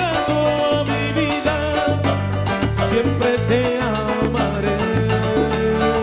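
Salsa band playing live, with a pulsing bass line under dense percussion strokes and melodic lines above.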